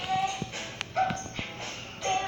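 Television soundtrack heard through the TV's speaker: music, with two short high-pitched calls about a second apart.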